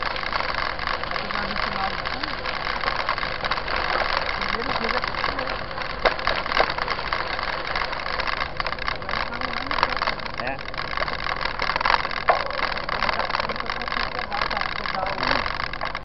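Mountain bike riding over a dirt track: steady tyre and rolling noise with rattling of the bike and a few sharp clicks and knocks from bumps, along with faint voices of nearby riders.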